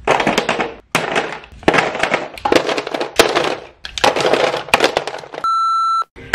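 A quick run of short clattering and rustling bursts, each starting and stopping abruptly, from things being handled and set into a drawer. Near the end comes a steady test-pattern beep about half a second long.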